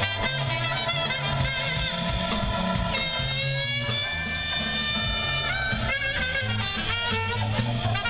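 Live jazz band playing on an outdoor stage, heard from the audience lawn: a stepping bass line under a melody, with one long held note in the middle.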